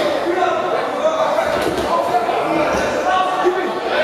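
Boxing spectators in a large echoing hall shouting and talking over one another, with a few dull thuds from the boxers in the ring.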